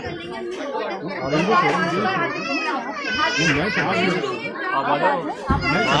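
Several people talking over one another at once, a confused hubbub of voices with no single clear speaker.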